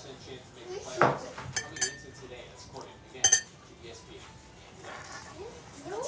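A metal fork clinking against a plate a few times, with brief ringing. The sharpest clink comes a little past the middle.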